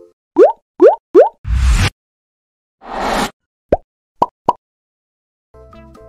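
Cartoon-style slide transition sound effects: three quick rising bloops in a row, a loud burst of rushing noise, a softer rush about a second later, then three short pops.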